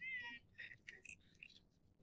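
A faint, short, high-pitched cry lasting about half a second at the start, followed by faint scattered ticks and rustles.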